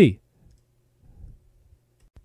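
Near silence with a faint low room hum after the end of a spoken word, and a soft computer-mouse click near the end.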